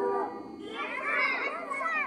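Schoolchildren's voices, several calling out over one another. There is a short call at the start, and the voices grow denser and louder from under a second in.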